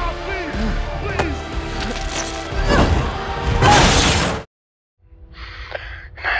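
Film fight-scene sound mix: music with voices and impact hits, rising to a loud noisy burst that cuts off suddenly about four and a half seconds in. After a brief silence a quiet low hum begins.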